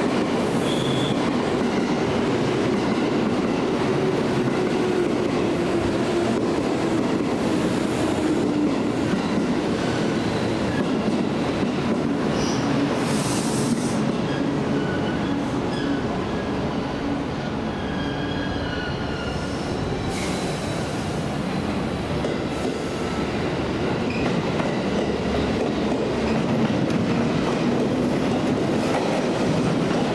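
JR West 283 series limited express electric train pulling into a station platform. Its wheels run over the rail joints with short high squeals, and a low hum falls slowly in pitch as it slows.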